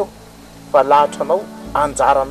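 A man speaking, with quiet background music under his voice. There is a short pause before he starts talking again, under a second in.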